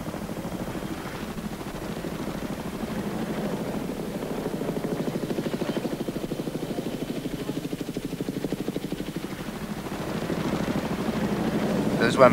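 Helicopter in flight, its rotor chop a fast, even pulsing over the engine noise, swelling louder toward the middle and again near the end.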